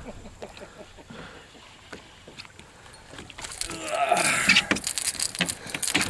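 A hooked speckled trout splashing and thrashing as it is lifted from the water and swung aboard a boat. A louder burst of splashing and rattling clicks starts a little past halfway.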